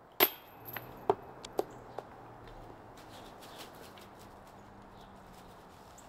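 A disc golf putt hitting with a sharp knock about a quarter second in, then several lighter knocks and taps over the next two seconds as the disc bounces away.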